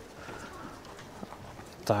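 Faint footsteps on a concrete walkway over a low background hiss, with a man's voice starting again near the end.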